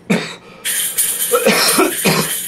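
A man coughing: one short cough right at the start, then a longer, harsher bout of coughing from about half a second in.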